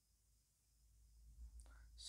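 Near silence: room tone for about a second, then faint vocal sounds in the last second as the speaker is about to talk again.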